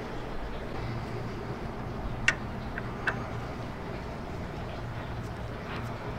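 A few light clicks of metal high-pressure fuel pump parts being handled and fitted together, the clearest about two seconds in, over a steady low hum.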